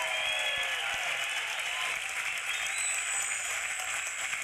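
Audience applauding, with a few cheers in the first second, then steady clapping.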